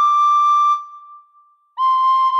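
Recorder playing a solo melody: a high held note fades out about a second in, and after a short gap quick repeated notes begin.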